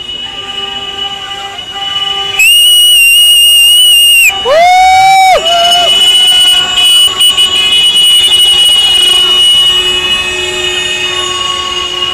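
Vehicle horns sounding, loud enough to overload the recording. A high-pitched blast of about two seconds comes first, then a lower horn that swoops up in pitch and holds for about a second, then a shorter, lower blast; a thin high tone carries on after them.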